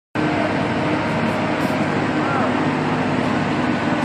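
Diesel engines of two mobile cranes running steadily, a constant low drone with no change in pace.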